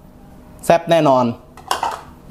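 Short metallic clatter of a kitchen utensil against cookware near the end, a cluster of quick clinks.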